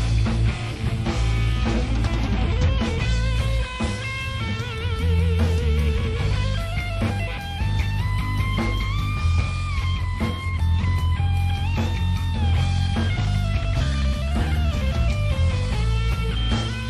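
Rock band recording with an electric guitar lead playing long, bent, held notes with wide vibrato over bass guitar and drums.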